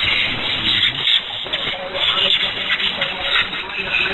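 Shortwave broadcast of Radio Deegaanka Soomaalida Itoobiya on 5940 kHz, heard through the receiver: a Somali-language voice, weak and half-buried under heavy static and hiss.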